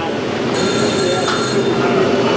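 Machinery running with a steady hum, with thin high-pitched squealing tones over the middle second or so.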